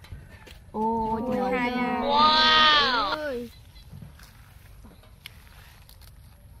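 A single drawn-out vocal call lasting nearly three seconds, starting about a second in. It holds one pitch at first, then swoops up and back down before dying away.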